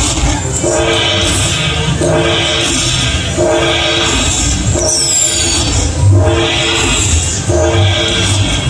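Panda Magic Dragon Link slot machine playing its bonus-collect sound effects: a chord-like chime repeats about every second and a quarter as each bonus value is tallied into the win meter. A whistling swoosh sounds about five seconds in.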